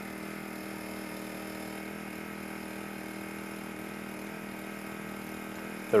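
An engine running at a steady speed, a constant even drone with no change in pitch.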